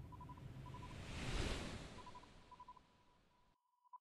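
A soft whoosh sound effect that swells to a peak about a second and a half in, then fades away, with faint short beeps at one steady pitch dotted through it. The last second or so is near silence.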